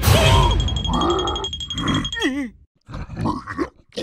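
Cartoon character voices making wordless grunts and a wobbly, quavering cry over music and a held high tone. The sound breaks off briefly past the middle, then gives way to a few short grunts.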